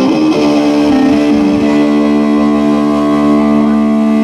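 Live rock band music with amplified electric guitars, settling a fraction of a second in into one long sustained chord.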